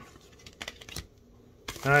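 Trading cards sliding against each other in the hands, with a few faint clicks. Near the end, the crinkle of a foil card pack's wrapper being picked up begins.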